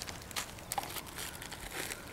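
Plastic zip-top bags of soft plastic fishing lures crinkling lightly as they are handled and shifted in a plastic bucket, with a few short crackles.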